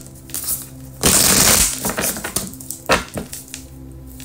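A deck of tarot cards being shuffled by hand: a loud, dense rustle of cards about a second in, lasting under a second, with a few single card taps and snaps around it.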